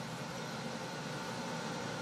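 Steady low background hiss of room noise, with no distinct events.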